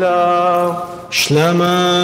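A man chanting liturgical Aramaic on long, steady held notes, with a quick breath about a second in before the chant resumes.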